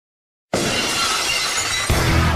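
Logo sound effect: silence, then about half a second in a sudden loud, harsh noise that stays loud, with heavy bass music coming in near the end.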